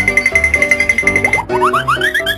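Playful children's background music with short bouncy repeated notes over a held high tone; about one and a half seconds in the held tone stops and a run of quick rising 'boing'-like slides follows.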